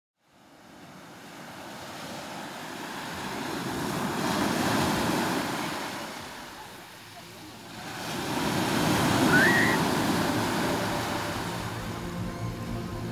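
Sea surf breaking and washing over the shore, fading in from silence: two swells of rushing water, the first peaking about five seconds in and the second, louder, near nine seconds.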